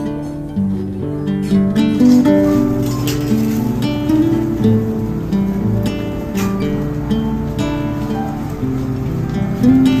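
Background music: a gentle melody of held notes led by plucked guitar.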